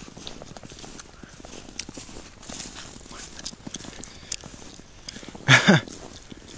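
Footsteps crunching on thin snow, an irregular run of soft crunches, with one short, loud cry falling in pitch about five and a half seconds in.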